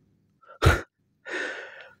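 A short laugh breathed right into the microphone: one sharp burst about two-thirds of a second in, then a longer breathy exhale.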